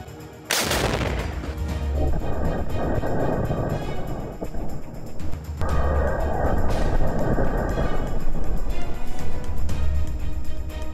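An AT4 84 mm recoilless anti-tank launcher fires about half a second in, one sharp blast, followed by a long rumble that swells again near the middle, over background music.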